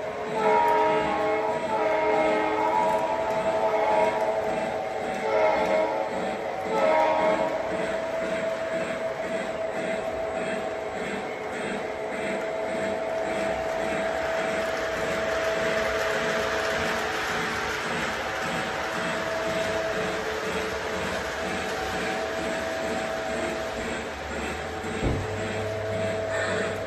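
Model diesel locomotive's electronic sound system sounding its horn in several blasts over the first seven seconds, then droning steadily while the train rolls with a regular clicking over the track joints. A sharp click near the end is followed by a low hum.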